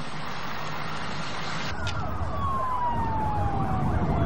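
A steady noisy rush, then after a cut a siren winding down: one long falling whine over a low engine rumble.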